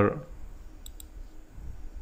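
Two faint computer mouse button clicks in quick succession about a second in, over low steady background hiss.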